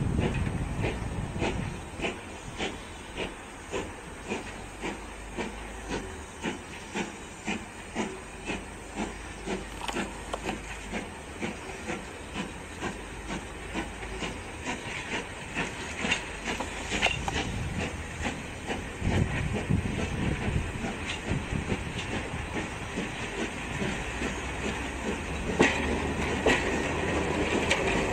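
Steam locomotive working slowly while shunting, with a hiss of steam and its exhaust beats coming in a steady rhythm of a little under two a second. The rolling noise of the coaches' wheels grows louder near the end as the stock draws close.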